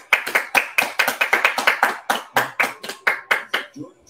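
One person clapping her hands in quick, even claps, about five a second, stopping shortly before the end.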